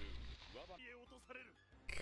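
Faint voice and background music from an anime episode playing at low volume.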